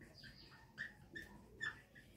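Marker squeaking against a whiteboard in a handful of short, faint strokes as a word is written.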